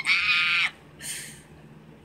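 A woman's excited high-pitched squeal lasting under a second, followed by a short breathy hiss.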